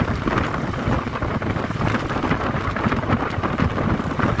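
Wind buffeting the microphone through an open window, over the road and engine noise of a moving vehicle: a loud, steady rushing rumble with irregular flutter.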